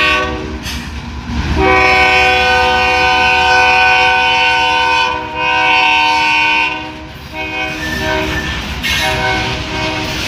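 Multi-chime locomotive air horn sounding over the rumble and wheel clatter of a passing freight train: one long blast of about three and a half seconds, a second of about a second and a half, then two shorter, fainter blasts near the end.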